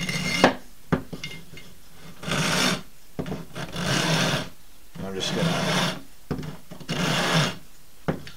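Long flat file rasping across cow bone held in a wooden carving cradle: a sharp click near the start, then four slow file strokes, each under a second, about one every second and a half.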